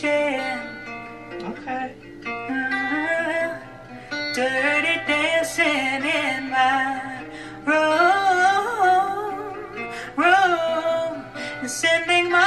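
A woman singing a slow soul ballad live with guitar accompaniment, her voice sliding and wavering through drawn-out runs in the second half.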